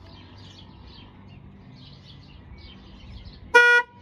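Car horn sounding one short, loud honk near the end, after a few seconds of quiet outdoor background.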